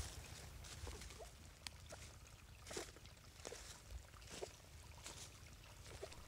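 Faint footsteps rustling through dry leaf litter on a forest floor, a few irregular steps and small ticks over an otherwise very quiet background.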